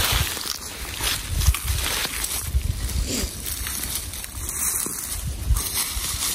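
Footsteps crunching through dry fallen leaves in an irregular walking rhythm.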